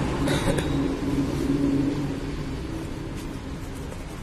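Steady rumble of road traffic, with a brief clatter about half a second in.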